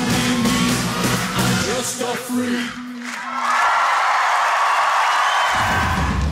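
A live pop band with a male lead singer plays the last bars of a song, ending about three seconds in. A studio audience then cheers and screams for about two seconds.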